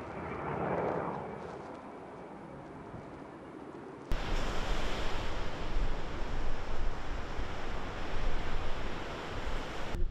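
Steady outdoor rushing noise of wind and surf, swelling briefly in the first second. About four seconds in it jumps abruptly to a louder, deeper rush with heavy rumble.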